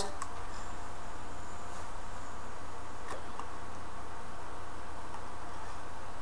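Steady low hum and hiss of room tone, with a few faint ticks scattered through it. No clear sound of the vape being drawn on stands out.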